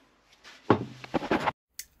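A few light knocks of a 3D-printed plastic boat hull handled over a wooden workbench, under a short wordless hum of a voice about halfway through. The sound cuts off abruptly near the end.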